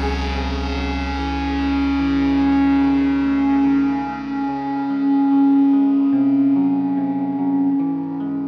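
Instrumental passage of a rock song led by electric guitar. One note is held steady over shifting lower notes, while a deep low note fades away about five seconds in.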